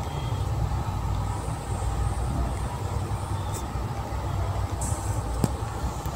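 Steady low background rumble, with a faint click about five and a half seconds in.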